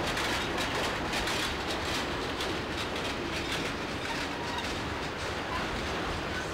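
Freight train cars, enclosed autoracks, rolling steadily past at close range: a continuous rumble of steel wheels on rail with rapid, repeated clicks from the wheels.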